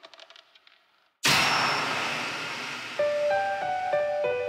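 A sudden sharp strike about a second in, ringing out and fading slowly over almost two seconds. Near the end, a soft melody of single held notes begins.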